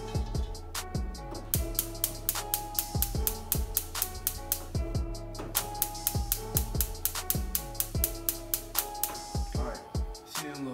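Background music with a steady drum-machine beat: deep, falling kick drums, a regular hi-hat and a held bass line.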